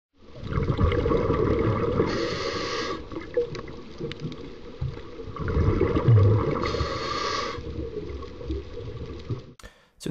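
Underwater sound effect of a scuba diver breathing: continuous bubbling and gurgling, with two hissing breaths through the regulator about two and seven seconds in, each lasting about a second. It fades out near the end.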